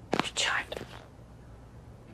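A woman's brief whisper, lasting under a second near the start.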